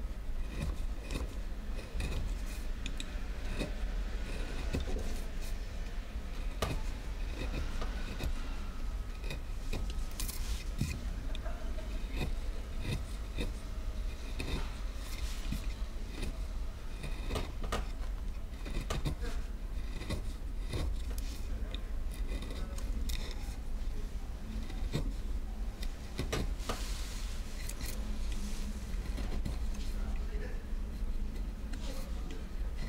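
Hand-held chisel cutting and clearing wood from a carved woodblock: irregular small clicks and scrapes of the blade in the wood, over a steady low hum.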